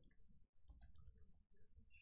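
Faint clicking of computer keyboard keys being typed.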